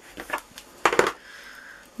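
Light plastic clicks and taps as a VersaMark ink pad's case is handled and set down and a clear acrylic stamp block is picked up on the desk, with two sharp clicks about a second in.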